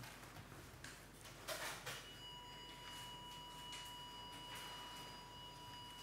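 Angiography X-ray system's exposure tone: a steady high beep that starts about two seconds in and holds, sounding while the X-ray is on for a contrast run.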